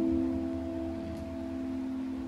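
Slow relaxing piano music: a held chord slowly dying away over the steady rush of a water stream.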